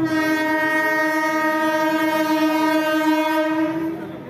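Electric train's horn sounding one long, steady blast of about four seconds as the train approaches the platform.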